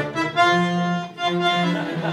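Bandoneón, a free-reed instrument, playing a short phrase of held notes and chords that change about three times.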